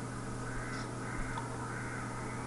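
Quiet room noise with a steady electrical hum, a couple of faint computer mouse clicks, and faint bird calls in the background.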